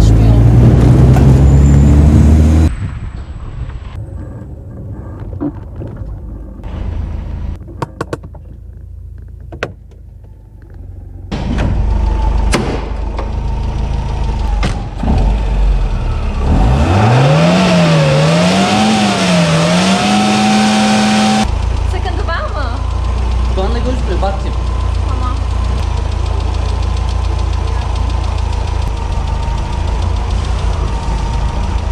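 Old carburetted Tofaş car engine. It is first heard loud from inside the cabin while driving. Later it is revved with the bonnet up: the pitch climbs, rises and falls a few times, then holds high. It then settles into a steady idle while the carburettor is being adjusted to cure stalling.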